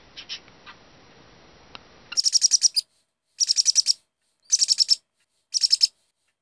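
A few faint short chirps from cockatiels, then, from about two seconds in, loud bursts of rapid, high-pitched bird chirping that repeat about once a second.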